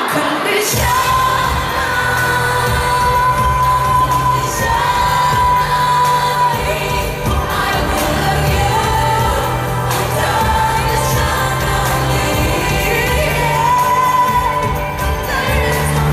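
Live pop music through an arena sound system: a female lead singer holding long, slowly moving notes over a band with a heavy, steady bass, as recorded from within the crowd.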